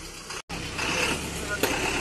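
A short break in the sound just under half a second in, then the inside of a bus with its engine running low and voices in the background. A sharp click comes a little past halfway.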